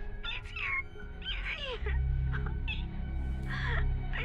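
A woman sobbing and whimpering in distress: several short, high, wavering cries. Under them runs a low, ominous music drone that swells about two seconds in.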